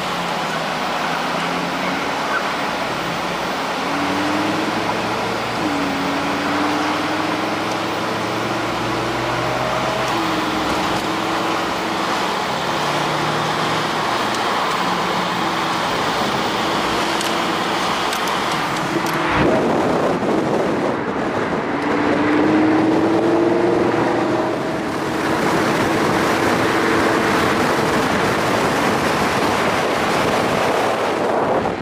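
A car driving through traffic, heard from inside a car: engine tones rise and fall over steady road noise. About two-thirds of the way through, the sound switches abruptly to a louder, windier roadside recording of moving traffic.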